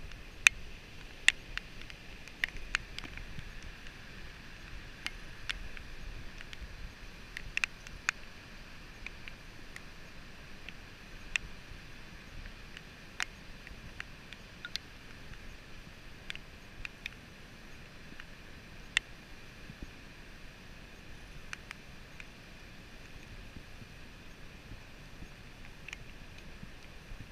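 Storm surf breaking on the beach as a steady wash of noise, with many sharp, irregular ticks scattered across it.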